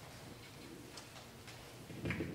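Quiet room tone with a few faint, light ticks.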